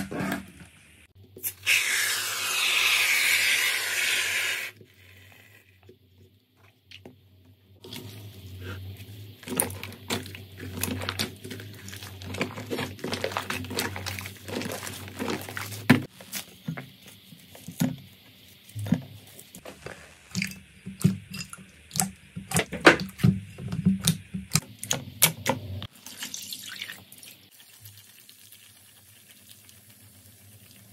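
Hands pressing, poking and stretching slime: many wet, sticky clicks and crackles, dense through the middle. Near the start there is a louder hissing rush lasting about three seconds.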